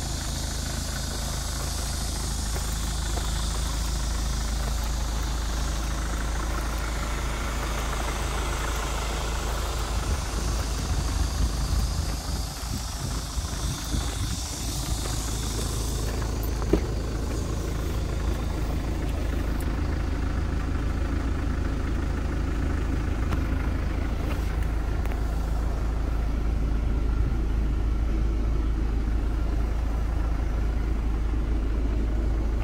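Hyundai Terracan SUV's engine idling steadily, with one sharp click about halfway through.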